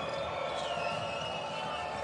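Basketball arena ambience: a steady wash of crowd noise, with a faint wavering high tone running through it.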